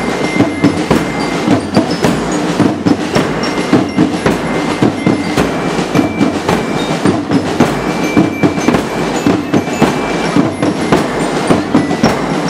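A marching percussion band of drums beating a steady, driving parade rhythm, with a few high held notes over the top.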